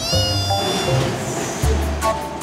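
A cartoon monkey's short, high-pitched squeaky cry at the start, over background music with a bass line.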